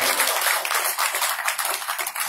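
Audience applauding right after the music stops, many hands clapping at once and beginning to thin out toward the end.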